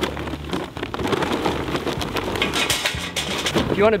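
Charcoal briquettes poured from a paper bag into a metal charcoal chimney starter, clattering against the metal and against each other in a dense, irregular stream.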